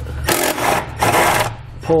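Cordless impact driver with a 13 mm socket, running in two spurts, about a second and then about half a second, as it backs out an exhaust hanger bolt.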